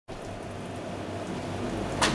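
Steady, even background hiss with a faint low hum underneath: room tone with no distinct event.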